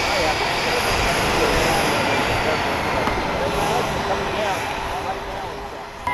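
Jet turbine noise from a parked Boeing 747 (Air Force One): a steady rushing roar with a high whine that slowly falls in pitch, easing off toward the end.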